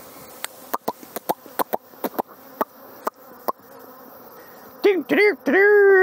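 Honey bees buzzing faintly around open hives, broken by a string of sharp clicks in the first half. Near the end a man's voice comes in with a drawn-out held sound.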